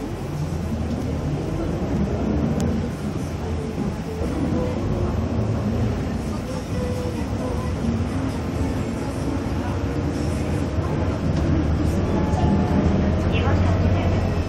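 Steady low drone of a bus engine and road noise heard from inside the moving cabin, with indistinct voices over it.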